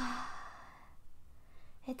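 A woman's sigh: a short voiced "hah" falling in pitch that trails into a breathy exhale and fades within about a second. It reads as a sigh of relief.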